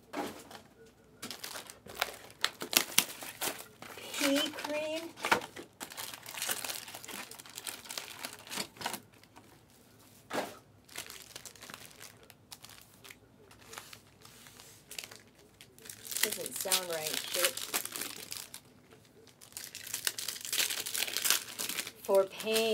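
Foil Panini Select trading-card pack wrappers crinkling and tearing as packs are opened by hand, in a dense run of sharp crackles with a few brief pauses.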